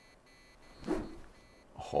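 A golf club swung one-handed, striking a ball off the hitting mat into an indoor simulator screen: two short knocks, about a second in and near the end.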